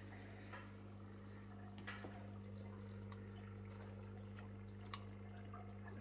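Faint steady low hum of a small aquarium air pump, with faint dripping and trickling water from the fish tank and a few soft ticks.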